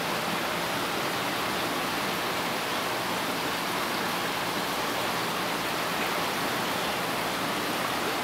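Steady rush of water moving through an aquarium's circulation, an even hiss that does not change.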